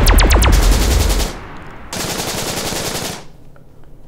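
A loud, rapid rattle of evenly spaced bangs, about eight a second, over a deep rumble, stopping a little over a second in. A shorter burst of hiss follows at about two seconds.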